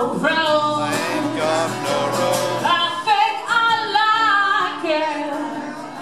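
Live acoustic music: a woman and a man singing over a strummed acoustic guitar, with long held sung notes.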